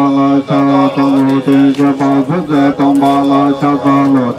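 Tibetan Buddhist monks chanting a mantra, held on one steady low note with quick syllable changes and brief breaks for breath.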